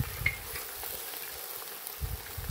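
Food sizzling as it cooks in a pan: a steady hiss with a few small crackles.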